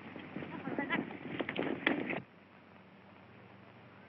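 Brief indistinct shouts and clatter that cut off abruptly a little over two seconds in, leaving only the old soundtrack's steady hiss.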